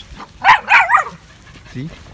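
Small dog barking twice in quick succession, two short, sharp, high-pitched yips about half a second in.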